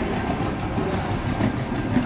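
Steady rumble of engine and rolling noise inside the cabin of a taxiing airliner.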